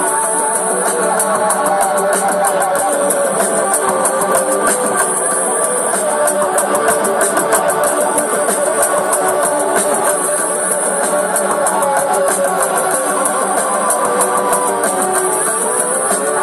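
Guitar music, plucked and strummed, playing steadily.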